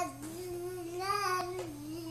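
An eight-month-old baby vocalizing in one long, drawn-out sung 'aah' that wavers up and down in pitch. There is a faint click about one and a half seconds in.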